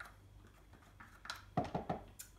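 A spoon clicking and scraping against a glass mixing bowl as grated garlic and ginger are tipped in: a few light taps about a second in, then a quick cluster of louder knocks near the end.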